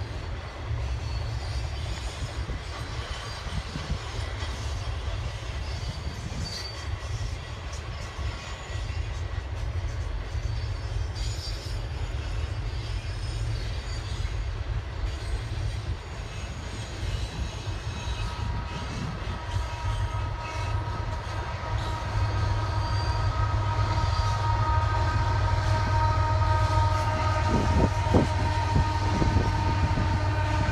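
Union Pacific double-stack freight train rolling slowly past, a steady low rumble of the cars on the rails. Past the middle, sustained high whining tones of several pitches join and the sound grows louder.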